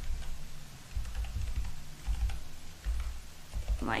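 Typing on a computer keyboard: an irregular run of light key clicks with dull low thumps.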